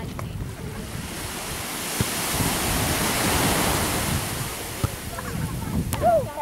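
Sea water lapping and washing, with wind buffeting the camera microphone. The noise swells to its loudest around the middle and eases off toward the end.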